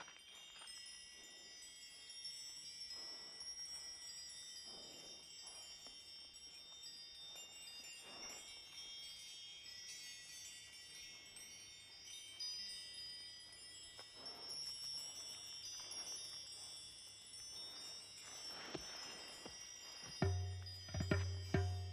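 Faint film-score music: a shimmering cluster of high, chime-like tones.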